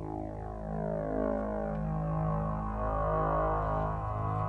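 Keen Association Buchla-format 268e graphic waveform generator oscillator sounding a steady low synth drone. Its timbre shifts continuously as new wave shapes are drawn onto its rolling wave 'tape', while the pitch holds.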